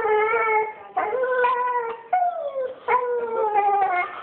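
Dog crying in about four long, whining howls in a row, most of them sliding down in pitch. It is the distress crying of a dog missing its absent owners.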